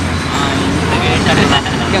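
Motor scooter engine running close by, a steady low hum, amid street traffic, with voices calling out over it.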